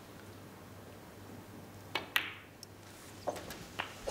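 Snooker balls clicking: the cue tip strikes the cue ball and, a fifth of a second later, the cue ball hits the black with a sharper click. A few fainter knocks follow over the next two seconds as the balls run on, under a quiet arena hush.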